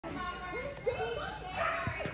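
Background chatter of high-pitched voices, children's among them, talking and calling out.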